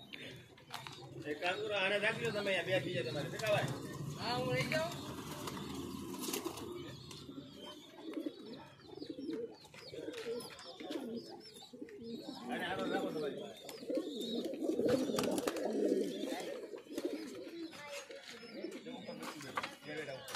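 Several domestic pigeons cooing, their calls overlapping and coming in repeated spells.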